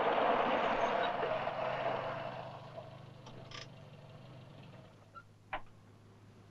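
A running engine fading out over about three seconds, followed by a few faint clicks.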